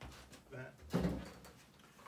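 A chair taking a person's weight as he sits down: one dull thump about a second in, with a lighter click just before it.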